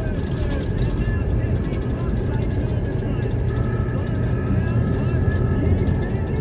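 Steady low rumble of a car's engine and tyres on a sealed road, heard from inside the cabin while driving.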